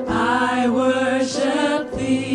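Voices singing a slow gospel praise song over piano accompaniment, with long held notes that bend in pitch.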